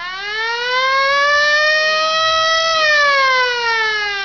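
Air-raid siren wailing: one slow rise in pitch for nearly three seconds, then a slow fall.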